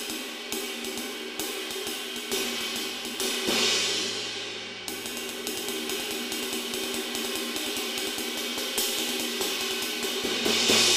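Istanbul Agop Special Edition 21-inch Jazz Ride cymbal (1844 g) played with a wooden drumstick: a steady ride pattern of stick pings over a sustained wash. A louder accented stroke about three and a half seconds in swells and fades, and another accent comes near the end.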